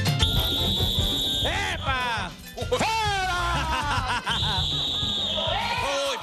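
A comedy TV show's bumper jingle: music over a steady beat, with a held high tone about a second long near the start and again near the end, and swooping pitch glides in between.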